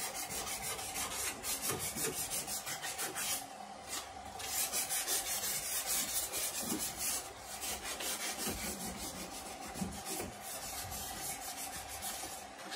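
Hand sanding a car's steel rear body panel with sandpaper: quick back-and-forth strokes in a steady rhythm, with a brief pause about three and a half seconds in.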